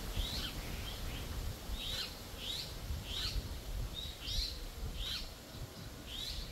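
A small songbird in the trees calling with a series of short, high chirps, roughly one or two a second, over a faint low background rumble.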